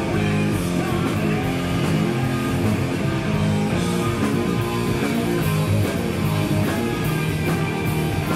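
Live rock band playing: electric guitar, electric bass and drums, with a dense, sustained low end and steady cymbal hits.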